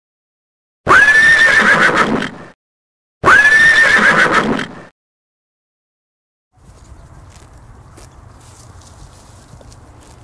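Horse neighing: two loud, matching whinnies about a second and a half each, the pitch leaping up at the start and then wavering before it dies away. From about two-thirds of the way through there is only faint background noise with a few light clicks.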